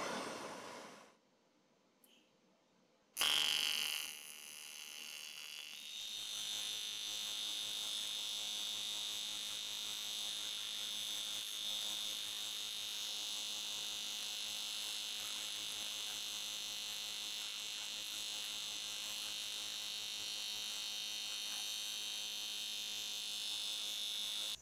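AC TIG welding arc on a cast aluminium exhaust tuned pipe, struck about three seconds in after a moment of silence. It is louder for the first second, then buzzes steadily while filler rod is fed into the puddle.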